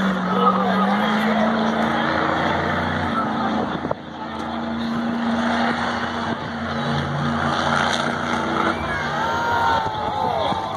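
Monster truck's supercharged engine running hard through a wheel-skills run, its note climbing in the first second and then holding, with a brief drop about four seconds in. Steady stadium crowd noise runs underneath.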